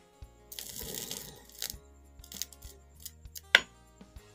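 Angle-grinder armature run on a 12-volt supply through hand-held wires on its commutator, spinning beside a speaker magnet: a scraping, crackling contact noise about half a second in, scattered light metallic clicks, and one sharp click near the end.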